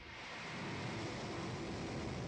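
Steady rushing noise of rocket motors propelling an early Transrapid maglev test sled along its track.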